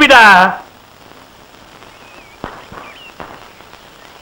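A man's shouted line breaks off about half a second in. Then a faint hiss with a few thin, faint bird chirps and two soft clicks.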